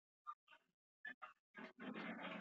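A person's voice coming through a video call in short, choppy fragments separated by total dropouts, ending in a longer garbled stretch near the end: speech broken up by a poor connection.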